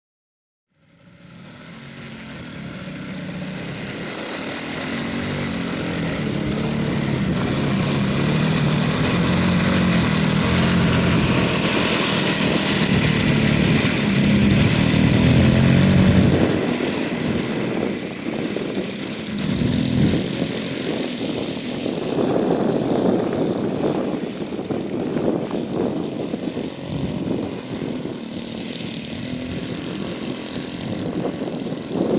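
A Saito 100 four-stroke glow engine in a large model Piper J3 Cub, running steadily on the ground with its propeller turning, fading in over the first few seconds. About sixteen seconds in the sound drops and turns uneven, rising and falling a little.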